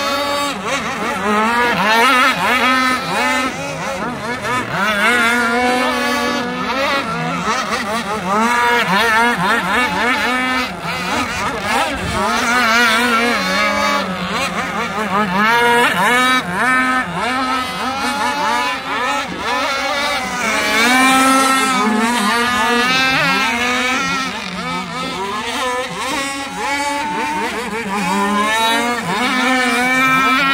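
Several radio-controlled racing boats' engines running at speed together, their pitches overlapping and rising and falling as the boats round the buoys and pass by.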